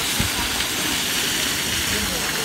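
A steady rushing hiss of background noise, with one brief low thump about a fifth of a second in.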